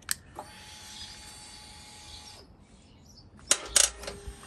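Motorcycle that will not start on a weak battery. A faint steady whine runs for about two seconds, then two sharp clicks come near the end with no engine cranking.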